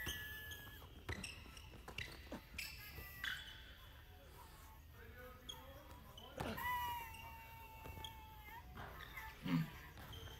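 A basketball is dribbled on a hardwood gym floor, with sneakers squeaking on the court. The squeaks come as several short squeals, with a longer one about two-thirds of the way through.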